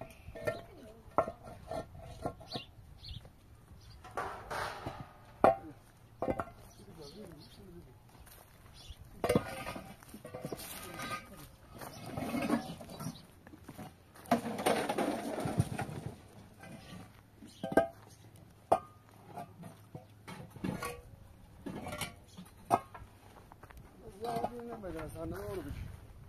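Hollow concrete blocks knocking as they are set down on the ground and on one another, sharp single knocks every few seconds, with voices talking in between.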